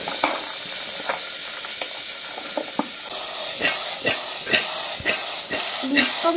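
Chopped vegetables (peas, potato, tomato, cauliflower) being scraped with a spoon from a steel bowl into a pressure cooker: a run of light knocks and clatters, coming faster in the second half, over a steady hiss.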